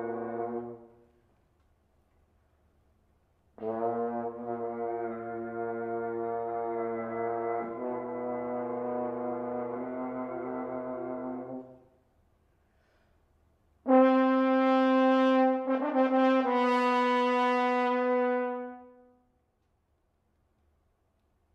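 Solo French horn (horn in F) playing long, held low notes separated by rests. A note ends about a second in. A long note follows with one change of pitch partway through. The last phrase, near the end, is louder and brighter, with one change of pitch, and dies away.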